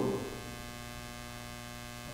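Steady low electrical mains hum in the audio, with the tail of a man's voice dying away at the very start.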